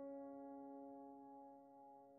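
Soft background piano music: a chord of several notes held and slowly fading away.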